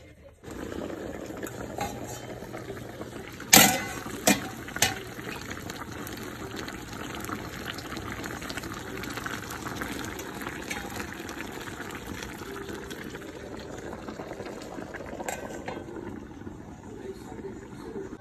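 A pan of fish, okra, potato and pumpkin simmering in broth with a steady bubbling. A few sharp clicks come about three and a half to five seconds in, and another one near the end.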